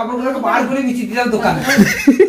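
A woman talking with light chuckling laughter.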